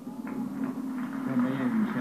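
A man speaking, as in broadcast commentary: the voice is faint at first and grows louder from about a second in.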